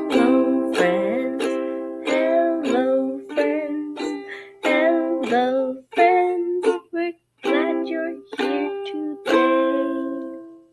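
A ukulele strummed in chords at about two strums a second, with a woman singing along.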